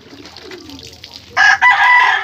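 A rooster crowing loudly, the crow starting about one and a half seconds in.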